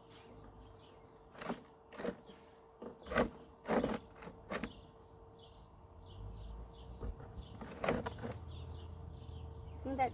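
Irregular clicks and knocks of plastic pool-pump fittings and hose being handled and fitted, about half a dozen, spread unevenly. A faint steady hum runs underneath.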